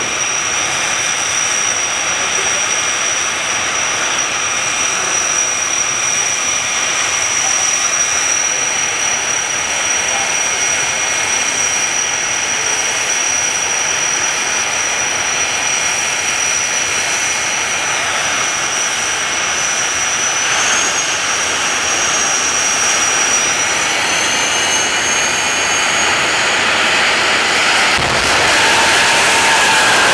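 Two jet dragsters' turbojet engines running at the start line with a steady high whine. Over the last several seconds they spool up, the whine rising in pitch, and they get louder as they launch near the end.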